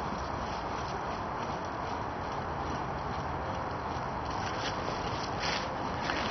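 Steady background noise with no distinct event, and a few faint clicks or rustles near the end.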